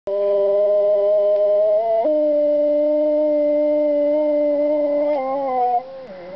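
A husky-type dog howling: one long, unbroken howl that steps up to a higher pitch about two seconds in, holds there, then dips slightly and stops near the end.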